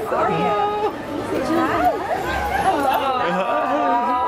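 Several people talking at once: overlapping voices and chatter.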